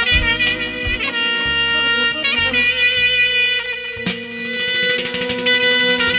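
Clarinet played live through a PA, running a quick ornamented phrase and then holding one long note from about a second and a half in. Low accompaniment sits beneath it, with a few drum beats in the first second.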